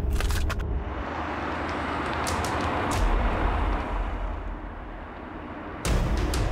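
A few sharp clicks, then a car driving past: road and engine noise swells to a peak about halfway through and fades away.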